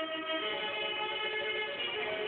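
Recorded music with held notes, played from a record on a Philips AG9102 record player through the loudspeaker of a 1930s Philips Symphonie 750 A tube radio.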